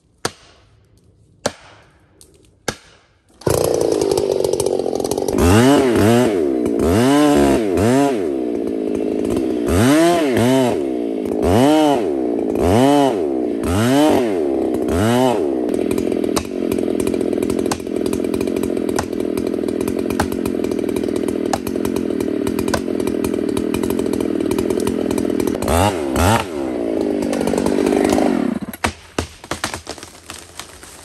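A few sharp knocks, then a chainsaw with a long bar running at full throttle as it cuts through a large tree trunk in the felling cut. Its pitch dips and recovers about once a second as the chain bogs in the wood, then it holds steady before a last rev and stops near the end.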